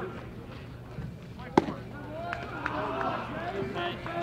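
People talking at a baseball field, their voices mixed and overlapping. One short, sharp crack of an impact, the loudest sound, comes about a second and a half in.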